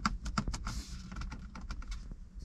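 Fingers tapping and knocking on a 2021 BMW 120i's dashboard, on the infotainment screen housing and the plastic trim around it: a quick, irregular run of sharp clicks and knocks that tests how solid the interior panels are.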